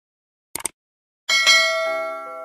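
Subscribe-animation sound effect: a quick double mouse click about half a second in, then a bright bell ding a little over a second in that rings on and fades, with lower chime notes joining near the end.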